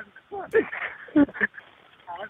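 A phone-quality recording of a 911 call playing: short, broken fragments of a voice sounding thin and telephone-muffled, with line hiss between them.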